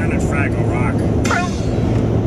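Steady road and engine rumble inside a moving car, with a low hum, and the wavering voices of a TV show playing from a small screen over it.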